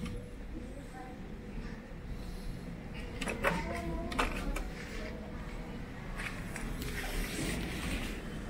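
Small kick scooter wheels rolling over a smooth hard floor, a low steady rumble, with a faint steady hum and a few brief distant voices in the background.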